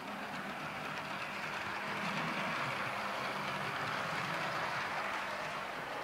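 Model railway train, a London Midland Class 350 electric unit, running along the track: a steady whirr from its small motor and wheels on the rails, a little louder from about two seconds in.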